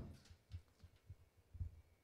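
Near silence, with a few faint, short low thumps.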